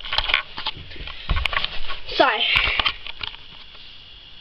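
Handling noise as a camera is moved about close to the microphone: rustling with a few sharp clicks and knocks. A child's voice says one short word just after the middle.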